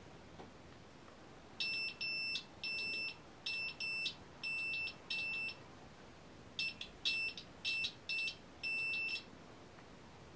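UNI-T digital multimeter's continuity beeper sounding as its test probes touch conductive stitches of a knitted e-textile swatch: about a dozen high-pitched beeps of uneven length, short blips and longer tones, with a pause of about a second in the middle. Each beep marks an electrical connection between the two probe points.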